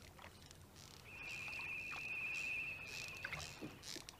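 Faint water sounds from a small boat being poled along, with a steady, slightly pulsing high trill that starts about a second in and stops just before the end.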